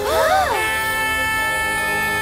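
A small cartoon horn blown in one long, steady held note, which follows a brief swooping rise and fall of pitch at the start.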